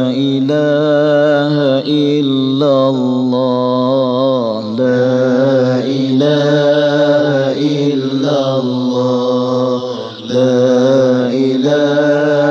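Unaccompanied vocal chant for an Islamic lecture intro: a solo voice sings long, wavering melismatic notes over a steady low sustained drone, with a brief break about ten seconds in.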